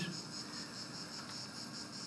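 Quiet room tone under a faint, steady high-pitched pulsing trill.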